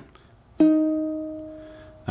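A single ukulele note, E-flat on the third fret of the C string, plucked once about half a second in and left to ring, slowly fading.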